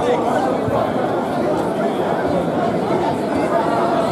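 Steady hubbub of many people talking and calling out at once, echoing in a large hall: the background chatter of spectators and coaches at a grappling tournament.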